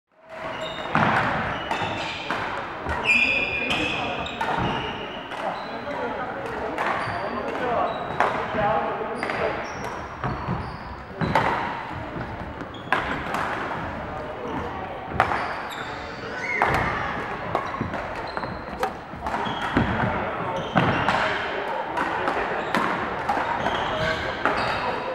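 Badminton rackets striking shuttlecocks on several courts at once in a large, echoing sports hall: sharp, irregular clicks, with players' voices in the background.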